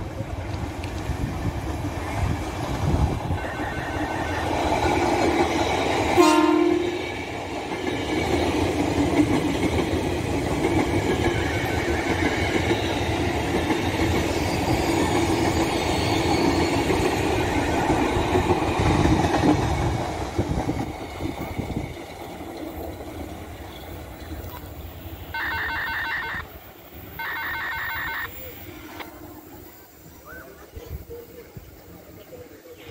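KRL Commuter Line electric multiple unit passing close by, its wheels rumbling and clattering over the rails and points, with a brief horn toot about six seconds in. The passing noise dies away after about twenty seconds, and two short pitched signals of about a second and a half each sound near the end.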